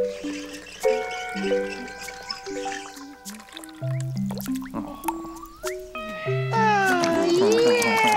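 Light background music: a simple melody of held notes stepping up and down. About six and a half seconds in, high, wavering voice-like calls that glide in pitch come in over it.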